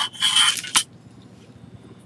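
A short scrape of a metal straightedge sliding across a cutting mat, about half a second long, near the start.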